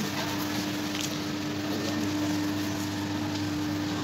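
A steady mechanical hum holding one constant tone over a low drone, with faint background noise.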